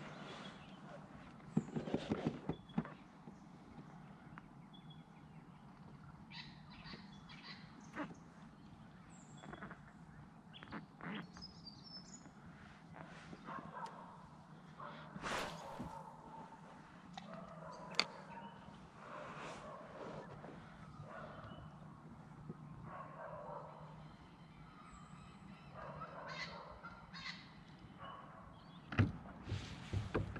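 Birds calling here and there, over a faint steady background, with occasional sharp clicks and knocks, including a quick rattling run of clicks about two seconds in and single knocks later on.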